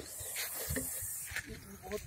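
Russell's viper hissing in breaths as it is coaxed out of a bottle with a snake hook, the defensive hiss it gives when it senses danger.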